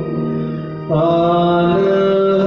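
A Syriac liturgical hymn sung in long, held notes in the style of chant. The sound dips briefly, then a new phrase starts about a second in.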